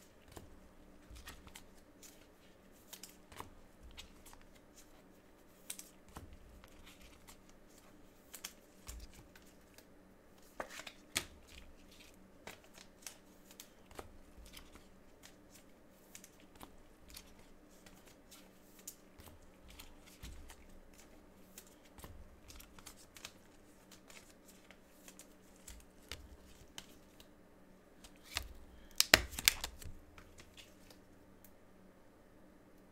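Trading cards and their packaging being handled and sorted by gloved hands: scattered soft clicks and rustles, with a louder cluster of clicks near the end, over a faint steady hum.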